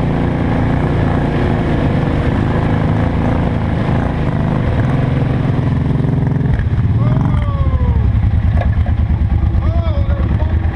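Arctic Cat 700 ATV's single-cylinder engine running close and loud as it drives through mud; about seven seconds in its note drops to a slower, throbbing beat as it slows. A few short gliding tones sound over it near the end.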